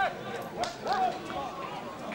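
A few short shouted calls from voices around an outdoor football pitch, over a steady background hubbub.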